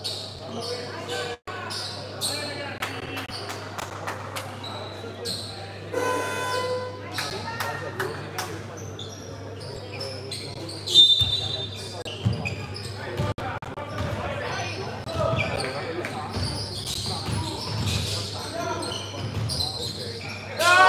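A basketball being dribbled on a hardwood court, repeated sharp bounces echoing in a large gym, with players' voices calling out and a steady low hum underneath.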